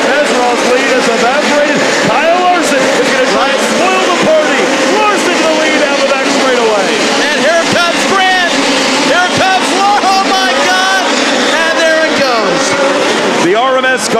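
A pack of USAC midget race cars running on a dirt oval, several engines revving and backing off through the turns, their pitches rising and falling over one another.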